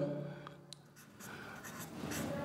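Faint sound of a felt-tip marker pen writing on paper, starting about a second in.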